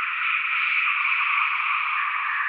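Steady hiss of filtered synthesized noise, thin and with no bass, no beat and no melody: a noise texture from an experimental electronic track.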